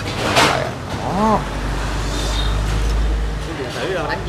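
A short hiss and a brief vocal sound in the first second and a half, then a steady low rumble lasting about two seconds.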